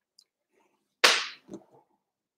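Near silence, broken about a second in by one sudden sharp hissing burst that fades within half a second, followed by a couple of faint knocks.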